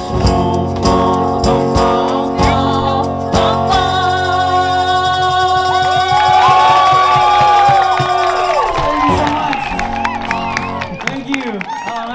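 Live acoustic duo, a man and a woman singing together over acoustic guitar with a hand shaker and tambourine. The song closes on a long held sung note, and the music ends shortly before the end.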